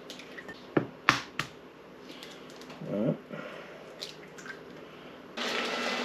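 Eggs cracked and broken over a ceramic mixing bowl: three sharp shell cracks and taps about a second in, then a few fainter clicks.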